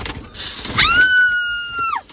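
A sudden hissing burst, then a high-pitched shriek that swoops up, holds steady for about a second and drops off at the end.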